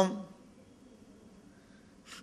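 A man's voice, heard through a microphone, finishes a phrase at the very start, then a pause of faint room tone until he speaks again at the end.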